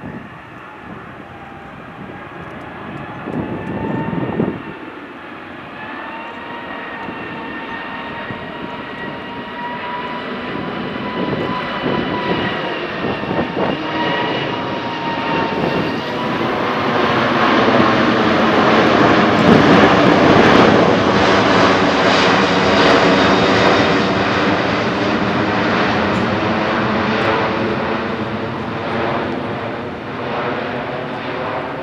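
Airbus A380's four turbofan engines during a low flypast. A high whine from the engine fans rises slightly as the airliner approaches. A loud rush of engine noise then peaks just past the middle as it passes overhead and slowly fades as it moves away.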